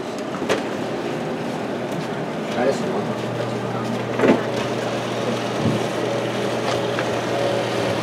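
Food dehydrator's fan running, a steady even noise with a low hum that comes up about three seconds in as the unit is opened and its trays reached, under camera handling noise.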